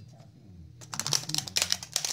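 Clear plastic wrapping crinkling as a wrapped stock chainsaw cylinder is handled: a rapid crackle of small clicks starting about a second in.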